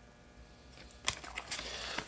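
Faint room hum, then, from a little under a second in, paper and a sticker being handled: light rustling with a few sharp clicks.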